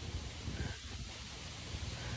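Faint outdoor ambience: a low rumble of wind on the microphone with a light rustle of leaves.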